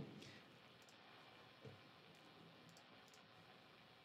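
Near silence from a noise-gated electric guitar rig: the gate keeps the idle neck pickup's hum and interference from being heard. A faint click about a second and a half in.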